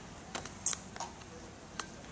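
A few short, sharp clicks, about four scattered over two seconds, against the faint hush of a quiet room.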